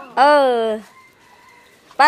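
A chicken calls once near the start: a single loud cry of about half a second that falls slightly in pitch.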